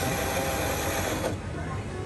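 Self-serve bean-to-cup coffee machine grinding fresh whole beans for a cafe latte: a steady motor whir that cuts off abruptly a little over a second in.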